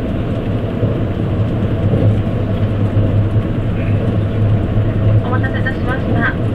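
Running noise inside an E257-series electric limited express car at speed: a steady rumble of wheels on rail with a low hum.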